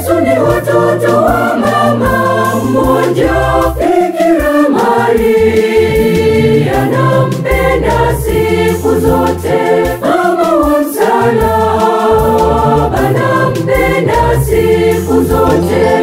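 Mixed choir singing a Swahili Marian gospel song in harmony, accompanied by an organ with sustained bass notes.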